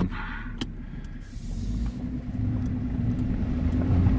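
Nissan Pathfinder driving on a gravel dirt road, heard from inside the cabin: a steady engine drone and tyre rumble that grows louder from about a second and a half in, with a few faint ticks.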